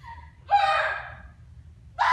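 A woman's voice lets out one short, loud vocal outburst, like a dramatic gasp or cry, about half a second in, then fades.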